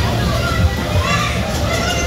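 Indistinct children's voices and shouts over a steady low hum.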